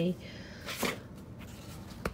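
A binder being slid out from a shelf of tightly packed binders: a short papery scrape a little under a second in and a sharp click near the end, over faint room tone.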